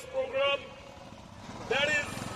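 Motorcycle engines idling with a low, pulsing rumble that grows stronger near the end, under a man's voice talking.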